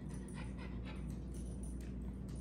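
A small dog moving about close by on a hardwood floor and nuzzling at a leg: faint scattered clicks and taps over a low steady hum.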